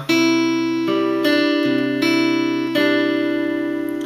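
Acoustic guitar fingerpicked slowly in a Travis pattern: a thumb bass alternating under plucked treble notes. About half a dozen notes start in turn and ring on over one another.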